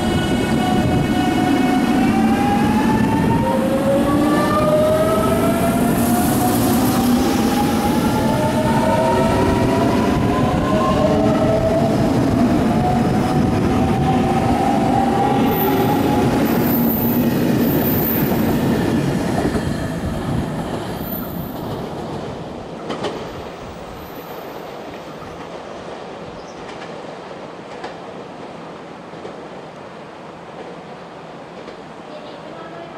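JR Kyushu 883 series electric train pulling away: its motor whine climbs in pitch in several tones as it accelerates, over wheel and rail rumble. After about twenty seconds it fades as the train draws away, with a sharp click a few seconds later.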